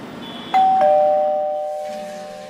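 Two-tone electronic doorbell chime: a higher 'ding' about half a second in, then a lower 'dong' a moment later, both notes ringing on and slowly fading. It signals visitors at the door.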